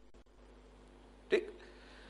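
Quiet room tone with a faint steady low hum, broken about a second and a half in by one short word from a man's voice.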